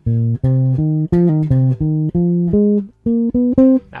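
Electric bass guitar playing a bass fill slowly, note by note: about a dozen plucked, sustained notes stepping up and down in pitch, with a short break about three seconds in before a few more notes.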